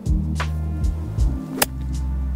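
Background music with a steady bass line, and about one and a half seconds in a single sharp click of a golf iron striking the ball on a short pitch shot out of thick rough.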